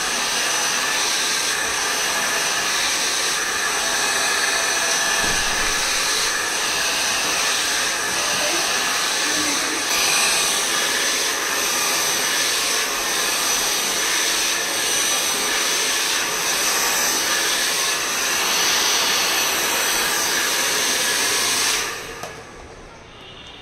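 Handheld hair dryer blowing steadily as wet hair is blow-dried, a rush of air with a thin high whine running through it. It stops right at the end.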